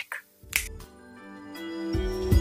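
A finger snap about half a second in, then music with held notes fades in and swells.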